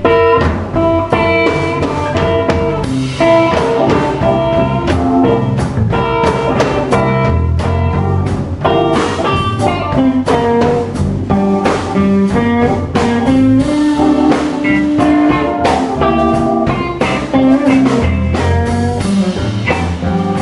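Live blues band playing an instrumental passage: single-note electric guitar lines over bass and drum kit.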